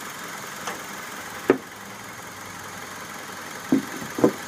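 2002 Honda CR-V's i-VTEC four-cylinder engine idling steadily, with a light click and then a sharp clunk about one and a half seconds in as the bonnet is released and lifted.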